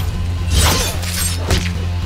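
Film action score with a steady deep bass, cut through by two crashing, shattering impact effects, one just over half a second in and one about a second and a half in.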